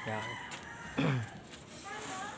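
A rooster crowing: a held, pitched call that falls away steeply about a second in. A man says a short word at the start.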